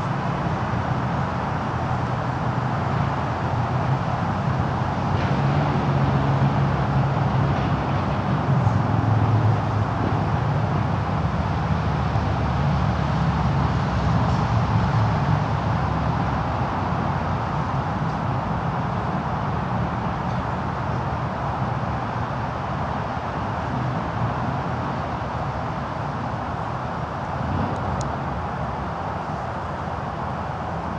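Steady rumble and hiss of road traffic, swelling louder a few times in the first half.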